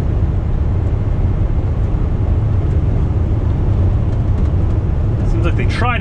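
Steady low rumble inside a semi truck's cab at highway speed: engine drone and tyre and road noise, with no change in pitch.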